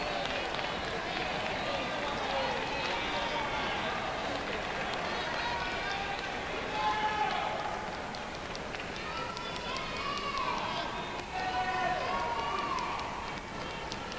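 Indistinct voices talking in the background, with no words clear enough to make out.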